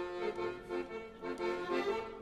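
Piano accordion playing a short lively introduction to a folk song, several notes sounding together and changing every fraction of a second.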